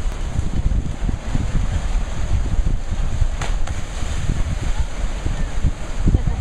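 Wind buffeting the microphone, a steady low rumble, over ocean surf on the rocks. Two brief sharp crackles come about three and a half seconds in.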